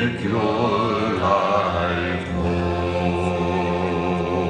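Male vocal ensemble singing a gospel song in harmony, long held notes with vibrato over steady low notes.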